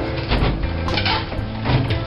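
A NY roof hook punching and tearing into drywall: several sharp, irregular knocks and crunches as the board breaks. Background music plays underneath.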